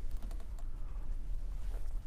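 Faint, rapid clicking of laptop keyboards being typed on, over a steady low room hum.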